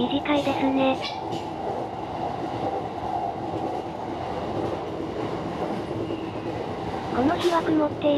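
Steady running noise of a JR E233-7000 series electric commuter train, heard from inside at the front of the train: an even rumble of wheels on rails.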